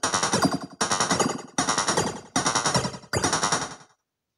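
Korg Electribe R mkII drum machine playing a repeating loop: about every 0.8 s a fast stuttering drum roll starts sharply and dies away, five times, with the last dying out just before the end.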